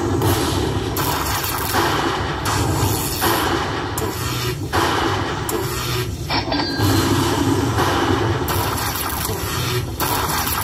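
Lightning Link slot machine tallying its bonus: a string of electric zap sound effects, about one every three-quarters of a second, one for each coin collected, over the game's music as the win meter counts up.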